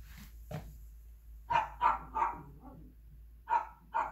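A dog barking: a quick run of three or four sharp barks about a second and a half in, then two more near the end.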